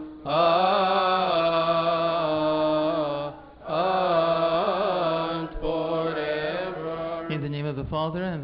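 A single male voice chanting long, drawn-out melismatic phrases of Coptic liturgical chant, with wavering held notes and a pause for breath about three seconds in. Near the end the chant gives way to spoken words.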